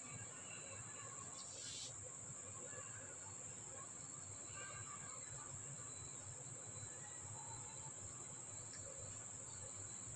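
A steady high-pitched buzz, like insects, runs throughout, with faint chewing and eating-by-hand sounds, and a brief soft click about two seconds in.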